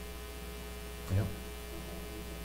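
Steady electrical mains hum, a low buzz made of several fixed tones, with a single short spoken "yeah" about a second in.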